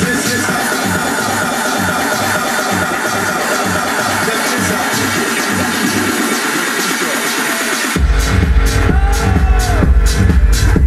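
Techno DJ mix playing loud in a club, with the deep bass held out of the mix and only a repeating beat higher up. About eight seconds in, the full bass kick comes back in and the music gets louder: the drop.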